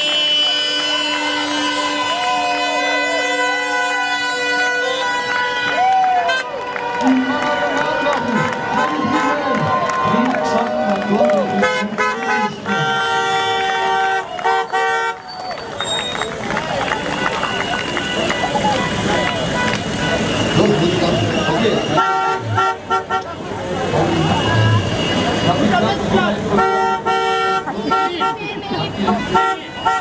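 Several car horns honking as a line of cars drives past: long held honks at first, then bursts of rapid repeated toots, with people's voices over them.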